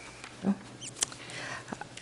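Quiet room tone with a single short spoken "no" about half a second in, then a small sharp click about a second in, just after a couple of faint high squeaks.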